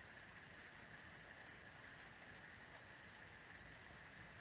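Near silence: faint steady hiss.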